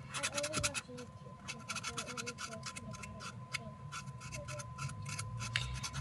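A marker tip scratching across a cardboard toilet-paper roll in quick, uneven coloring strokes.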